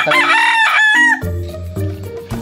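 A rooster crowing once, a single call of a little over a second that rises at the start, holds, then drops off, followed by background music.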